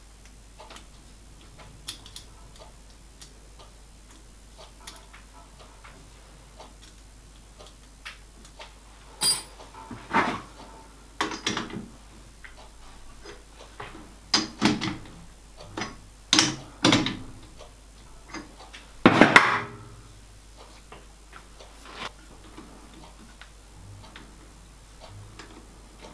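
Metal clicks and knocks from a lathe's three-jaw chuck being turned and tightened by hand. Faint ticks at first, then a run of louder knocks through the middle, the loudest about three-quarters of the way in.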